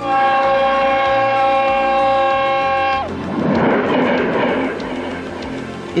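Horn of an X2 high-speed electric train sounding a steady chord of several tones for about three seconds, its pitch dropping as it ends, then the loud rushing noise of the train passing at speed.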